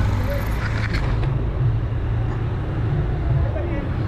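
Motorcycle engine running steadily at low speed, a continuous low rumble with road and wind noise, heard from the rider's seat.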